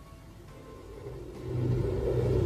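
A low, steady rumbling drone with a deep hum fades in about a second in and is loud by the second half.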